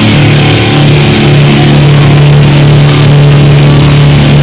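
Electric guitar played loud through an amp, holding one sustained low note that rings steadily.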